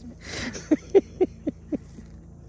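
A person laughing: a breathy outburst followed by five short laughing pulses, about four a second.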